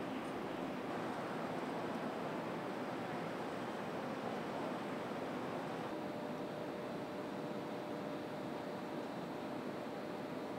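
A steady rushing background noise with no distinct events. About six seconds in its character changes: the hiss thins and a faint steady hum comes in.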